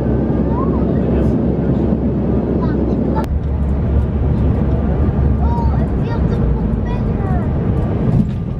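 Steady low rumble of an airliner heard from inside the passenger cabin, first on the descent, then, after a sharp click about three seconds in, the rumble of the plane rolling along the runway after touchdown.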